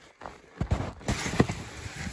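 Skis shuffling through deep snow: a few irregular crunches and knocks, the sharpest a little past halfway.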